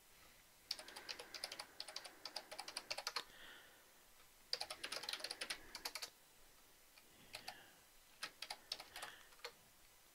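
Faint computer-keyboard typing in three bursts of quick keystrokes separated by short pauses.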